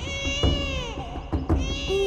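A newborn baby crying: two drawn-out cries that rise and fall in pitch, over background film music.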